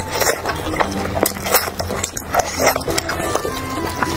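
Close-miked eating sounds: irregular crunches and wet chewing of grilled chicken, over background music.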